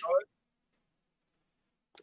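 A spoken word cuts off just after the start, then near silence with two faint ticks, until talk resumes at the very end.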